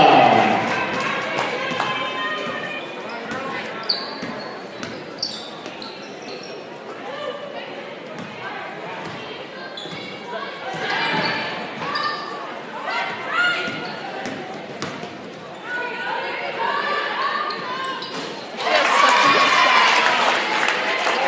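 Gym sounds of a basketball game on a hardwood court: the ball bouncing, short knocks and squeaks from the play, and players' and spectators' voices echoing in the large hall. Voices are loud at the very start, drop back, and swell again near the end.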